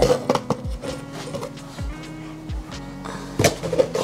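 Soft background music with held, slowly changing notes, with a few sharp clicks and knocks from handling the metal rod and plastic stand base.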